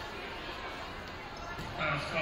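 Low crowd murmur in a gym, with a basketball bouncing on the hardwood court as a free throw is set up. A voice starts up near the end.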